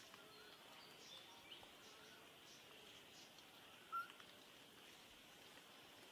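Near silence: faint outdoor ambience with a steady high hiss and a few faint chirps, and one brief, sharper chirp about four seconds in.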